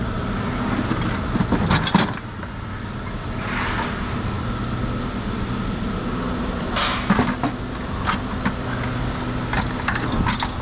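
A steady low engine hum runs throughout. Scrap metal clanks and rattles in plastic buckets as they are lifted and set down: a burst of clatter about two seconds in, another about seven seconds in, and more near the end.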